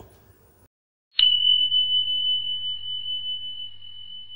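A single bell ding about a second in: one sharp strike, then one high steady tone that rings on and slowly fades.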